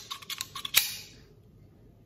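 Metal smartphone video rig (SmallRig aluminium-alloy cage) being handled: a quick run of sharp clicks and clacks in the first second, the last one the loudest.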